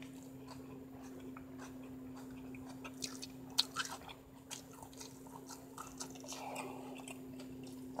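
Close-up chewing of a mouthful of taco, faint, with soft wet mouth clicks and smacks scattered through it, over a steady low hum.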